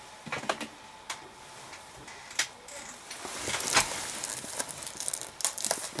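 A shrink-wrapped plastic Blu-ray case being handled: scattered light clicks of the plastic case, then, from about halfway, the plastic shrink wrap crinkling louder as it is picked at.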